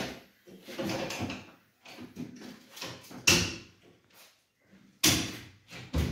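Aluminium-framed glass kitchen cabinet doors being opened and shut by hand: a run of knocks and bangs as the flap and hinged doors swing and close against the frames, the two loudest bangs about three seconds in and at five seconds.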